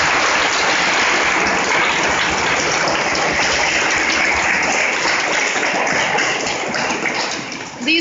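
Audience applauding steadily, dying away in the last second.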